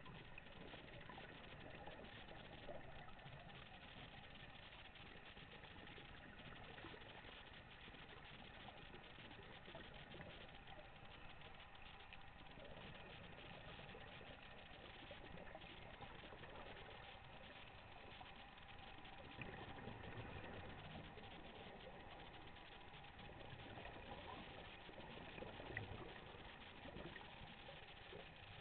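Faint, muffled underwater noise picked up by a camera in a waterproof housing: a steady hiss with a few slightly louder moments past the middle and near the end.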